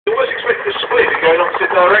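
Speech: a commentator talking, with a radio-like, narrow-band sound.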